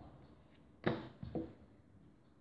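Plastic rolling pin working fondant on a silicone mat: a sharp knock of the pin against the surface a little under a second in, then two softer knocks close together.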